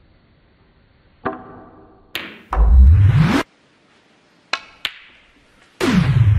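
Sharp clicks of a snooker cue tip and balls striking: single clicks about a second and two seconds in, and a quick pair about four and a half seconds in. Between them, and again near the end, loud swooping sounds with heavy bass, the first rising in pitch and the last falling.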